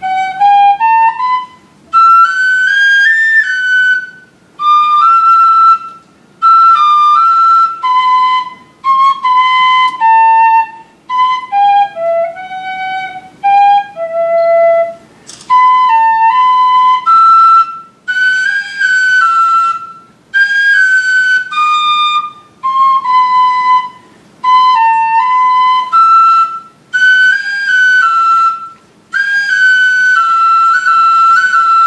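A tin whistle playing a slow unaccompanied melody. The phrases last a second or two each, with short breaks for breath between them, and the notes are held with small ornaments.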